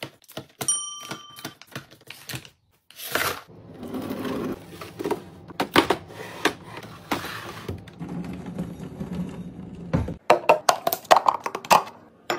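Snack packs being handled and set into clear plastic organizer bins: packaging rustling and crinkling, with many sharp taps and clicks of plastic. A short bell-like ding sounds about a second in, and a quick run of plastic clicks comes near the end.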